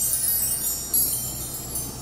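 A twinkling, high-pitched chime sound effect, the shimmering 'magic' sound of the hypnosis, fading slightly toward the end.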